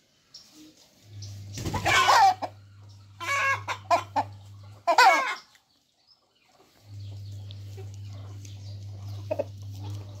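Chicken calls: a loud squawking call about two seconds in, a run of shorter clucks a second later, and another call near five seconds. A steady low hum runs under much of it.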